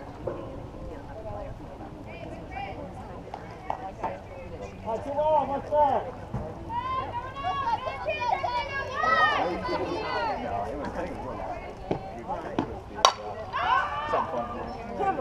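High-pitched voices of players calling and cheering around the field, then about a second before the end a single sharp crack of a softball bat hitting the ball.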